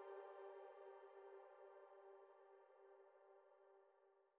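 The last held note of the song's instrumental accompaniment, one steady pitched tone slowly fading toward near silence.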